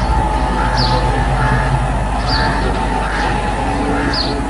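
Steady low hum and hiss of an old recording, with short high bird chirps about a second in and again past two seconds.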